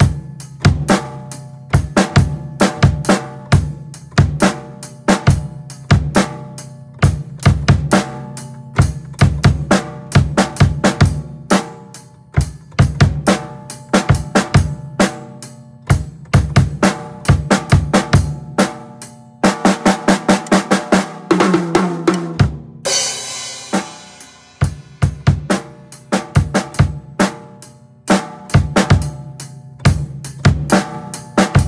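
Acoustic drum kit played in a steady groove of bass drum, snare and cymbals. About twenty seconds in, a quicker fill runs down in pitch and ends on a cymbal crash that rings and fades, and then the groove starts again.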